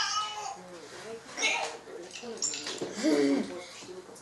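A boy making high-pitched wordless vocal sounds: a falling squeal right at the start and another drawn-out, gliding sound about three seconds in.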